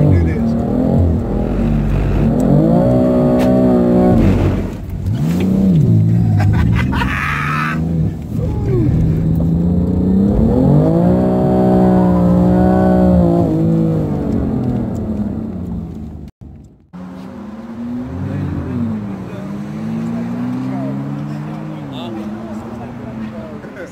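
BMW M3 engine heard from inside the cabin, revving up and down in long swells as the car slides on a wet track. About 16 s in the sound cuts, and after that a car engine is heard from outside, quieter, rising and falling in pitch.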